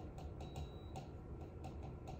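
Light, irregular ticks of a writing tip on the glass of an interactive touchscreen display as words are written, about three a second.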